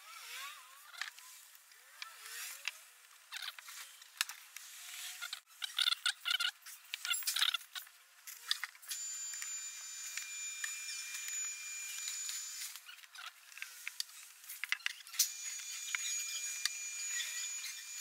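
Aerosol can of glue activator spraying in two bursts of a few seconds each, a steady hiss with a thin high whistle, setting the glue on the speaker cable. Before that come scattered clicks and rustling from handling the cable against the MDF panel.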